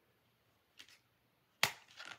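A plastic Blu-ray disc case being handled: a faint click a bit under a second in, then one sharp snap near the end followed by a few small clicks, as the disc is pried off the case's centre hub.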